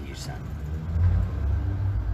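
A steady low rumble that swells about a second in, with the tail of a man's word at the very start.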